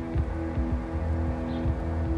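Background music score: sustained low notes held steady over a low, repeating pulse.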